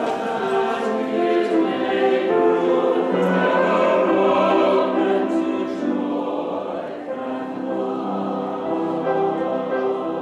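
Church choir singing a slow piece in long held chords, several voice parts together.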